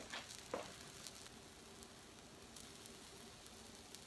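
Faint sizzle of pancake batter cooking in a lightly buttered nonstick skillet, with a few light clicks in the first second.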